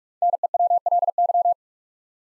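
Morse code tone sending the word NEWLY at 45 words per minute: a quick run of short and long beeps at one steady pitch, lasting about a second and a half.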